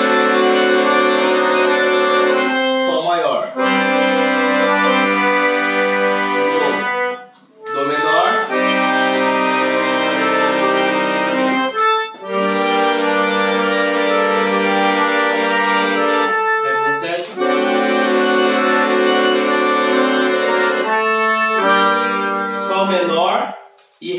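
Piano accordion playing a slow chord progression: five long chords, each held for three to six seconds, with short breaks between them.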